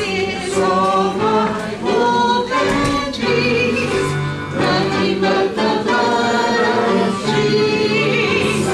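Congregation singing a hymn together, a woman's voice leading at the pulpit microphone.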